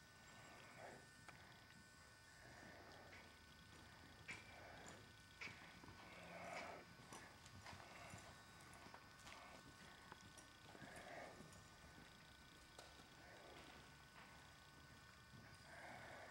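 Faint, irregular hoofbeats of a ridden horse moving over the sand footing of a riding arena, heard as soft, muffled thuds.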